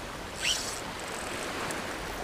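Small waves lapping at the shore, with a brief high squeak about half a second in.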